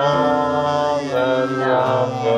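A family of two adults and two children singing a short hymn together, holding long notes with a change of pitch about a second in.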